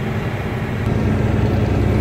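Steady drone of a semi-truck's diesel engine and road noise, heard inside the cab while driving at highway speed, growing slightly louder about a second in.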